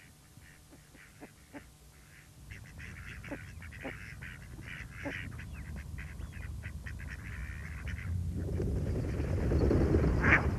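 A flock of mallard ducks quacking, with many overlapping calls starting after a quiet couple of seconds. Near the end a rising rush of noise swells under the calls and becomes the loudest part.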